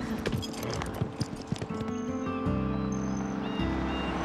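Horses' hooves clip-clopping as they set off, a quick run of hoofbeats over the first two seconds, with film-score music of sustained chords underneath that grows fuller about halfway through.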